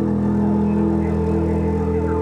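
Ambient music: steady, layered sustained tones like a held drone chord.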